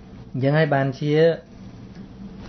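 A man's voice speaking a brief two-syllable utterance about half a second in, with low room tone on either side.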